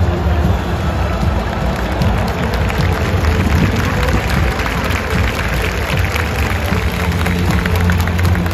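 Music played over the stadium loudspeakers, heavy in bass, with the noise of a large crowd in the stands underneath.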